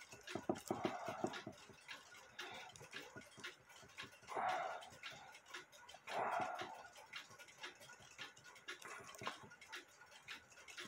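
Faint small metallic clicks and ticks of a screwdriver working against a cuckoo clock's main-wheel ratchet assembly as it is pried apart. Two brief, louder, muffled sounds come about four and a half and six seconds in.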